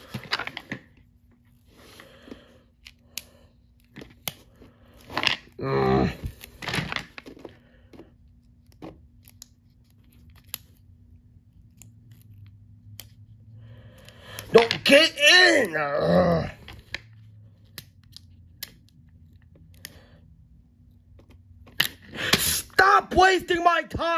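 Scattered small clicks and rustles of hands working stickers and plastic toy track pieces. A short vocal sound comes about six seconds in, and a stretch of muttered voice comes around fifteen seconds in.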